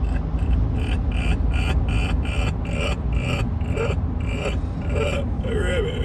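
Steady road and engine rumble inside a car cabin at highway speed, with a person laughing in quick repeated bursts, about three a second, for most of the time, trailing into a wavering voice near the end.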